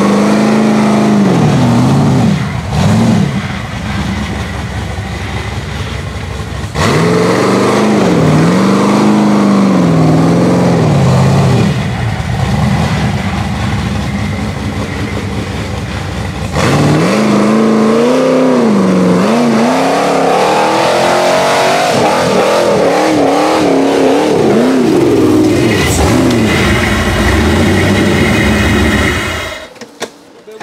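Rock buggy engine revved hard at full throttle again and again, its pitch climbing and falling with each stab of the throttle as it works up a slick dirt hill. The sound cuts off abruptly just before the end.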